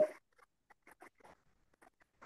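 A spoken word ends right at the start, followed by faint, irregular ticking from a computer mouse scroll wheel as the document is scrolled.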